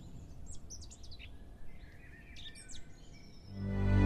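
Birds chirping in two short bursts of quick gliding calls over a faint, low, steady rush of outdoor ambience. Near the end, music swells in and becomes much louder.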